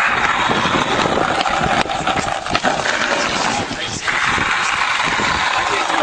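Skateboard wheels rolling on a rough paved path: a steady gritty rumble with many small clicks over cracks and grit in the pavement.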